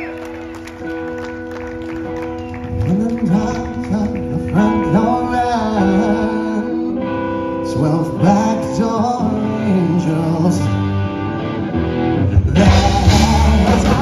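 Live rock band: held chords with electric guitar phrases full of bends and vibrato. Near the end the drums and the full band come in loudly.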